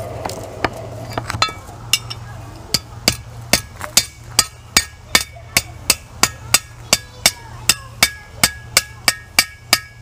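Blacksmith's hand hammer striking a small piece of hot iron on a steel anvil while forging a nail. A few light taps come first, then steady blows begin about two seconds in, about three a second, each with a short metallic ring.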